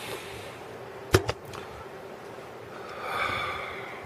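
Two sharp clicks close together about a second in, from handling the wires and clips of a breadboard circuit while chasing a loose connection, over a faint steady hum. A short breathy exhale follows near the end.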